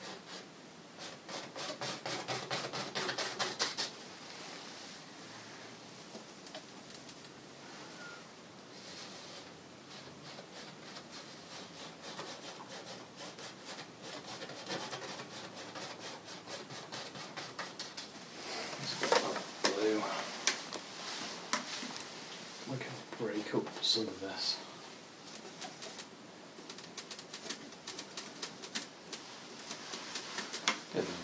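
Paintbrush scrubbing and dabbing oil paint onto a stretched canvas in quick, rapid strokes, busiest in the first few seconds and then softer and steadier. A few short voice-like sounds come in about two-thirds of the way through.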